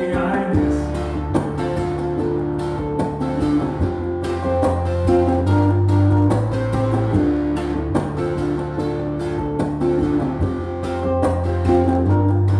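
Instrumental passage: an electro-acoustic ukulele strummed in a quick, steady rhythm over long held low bass notes that shift pitch every second or two.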